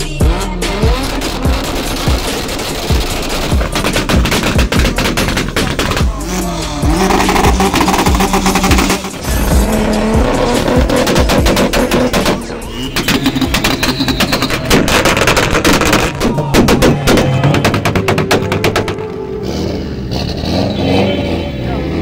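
Modified car engines revved hard, one after another, with rapid exhaust pops and bangs, mixed with background music.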